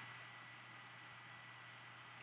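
Near silence: faint recording hiss with a thin steady high tone and a low hum, a pause in narration.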